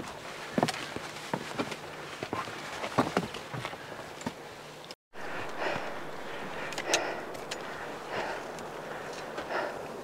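Footsteps of hikers' boots on rock and loose scree, with scattered sharp clicks and knocks, and a short break in the sound about halfway through; after it the steps come roughly once a second.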